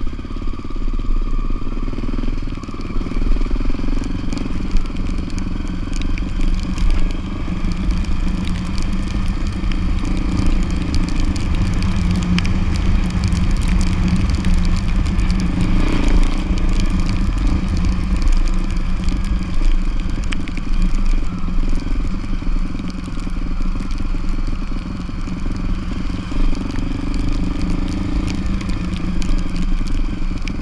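Motorcycle engine running steadily while riding a rough dirt road, with tyres crunching over gravel and many small rattles and clicks.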